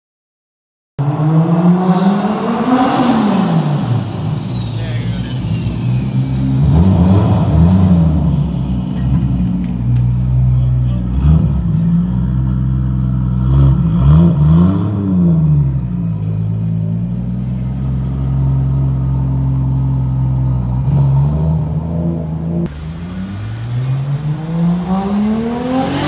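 Turbocharged Toyota 2JZ straight-six in a BMW 320i, starting about a second in: revved repeatedly, the pitch climbing and dropping with each blip, between stretches of steady idle, with another rev near the end.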